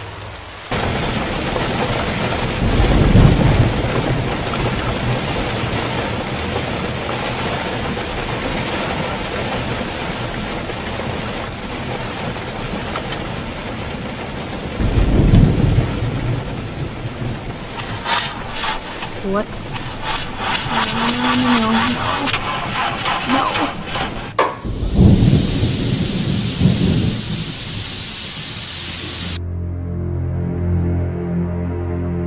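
Film soundtrack of a steady rushing noise, broken three times by heavy low rumbles about ten seconds apart. About two-thirds of the way in comes a stretch of wavering tones and crackle, and a bright hiss follows the last rumble.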